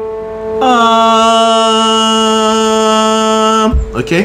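A man's voice sings a single low note, about A3, the lowest note of the mezzo-soprano range, and holds it steady for about three seconds. At the start a keyboard note on the same pitch is still ringing and fading.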